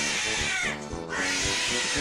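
A domestic cat screeching in two long cries, the second starting about a second in, over background music with a steady beat.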